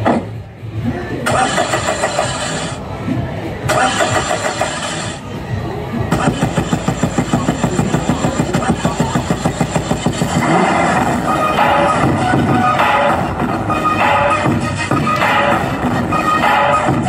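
Dance track played loud through small portable amplifier speakers. The track drops out briefly twice in the first few seconds, then has a fast buzzing pulse of about seven beats a second for a few seconds midway.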